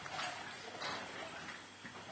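Faint, evenly spaced ticks or taps, about one and a half a second, three in all, over quiet room tone.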